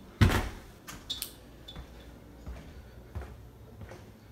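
Balcony door shutting with a thud just after the start, followed by a few faint knocks and clicks.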